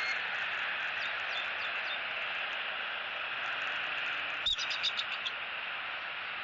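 Bald eagle call: a quick run of about seven high, piping notes about four and a half seconds in, the first the loudest and the rest fading. Steady outdoor hiss underneath.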